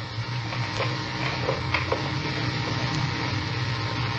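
Steady hum and hiss of an old tape recording in a pause between speech, with a few faint clicks or rustles.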